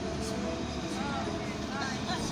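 Street background: brief indistinct voices over a steady low rumble of city traffic.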